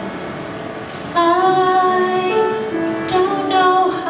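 A solo female voice begins singing about a second in, with sustained held notes, over a soft piano accompaniment.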